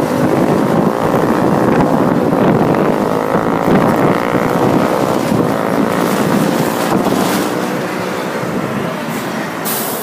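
City bus running along the road, heard from inside the cabin: engine drone with road and rattle noise, the engine note strongest in the middle and easing off toward the end. A brief hiss comes just before the end.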